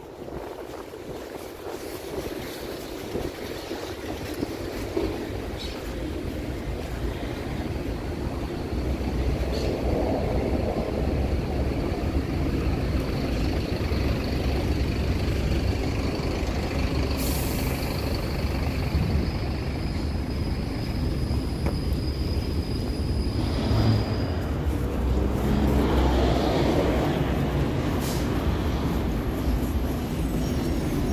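City street traffic passing on the avenue: a steady low rumble of engines and tyres that builds over the first several seconds, with a thin high whine held through the middle and a brief hiss partway through.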